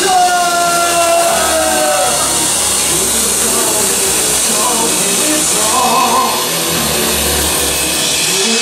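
Live band music played loud and steady on keyboards, electric guitar and drums. A held melody note slides slightly downward over the first two seconds and then fades into the band.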